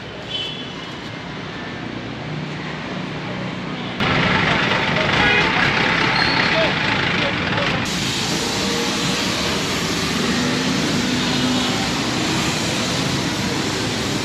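Street-cleaning noise: a tanker truck's engine running and water spraying from a hose onto paved footpath, over steady traffic. The sound gets abruptly louder about four seconds in.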